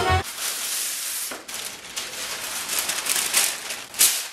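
Background music cuts off just after the start, then a sheet of baking paper is pulled off its roll out of the box, crinkling and rustling.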